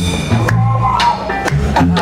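A blues band playing live: a drum kit keeps a steady beat of about two hits a second over electric bass notes.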